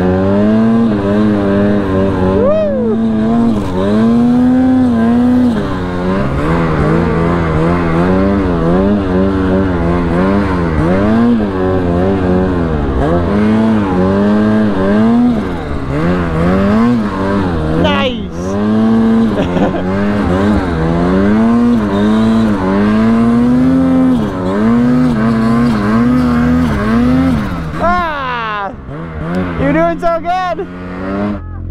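Ski-Doo snowmobile's 850 two-stroke engine revving up and down as the throttle is worked through deep powder, its pitch rising and falling every second or two. It drops off briefly about two-thirds of the way through and turns uneven near the end.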